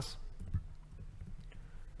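Faint laptop keyboard typing: a quick run of light key clicks over a low steady hum.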